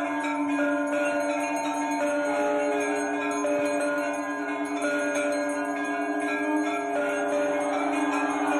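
Temple bells ringing continuously, many overlapping ringing tones held over a steady low hum.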